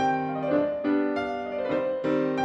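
A concert grand piano played solo in a classical recital. Notes and chords are struck two or three times a second, each ringing on into the next.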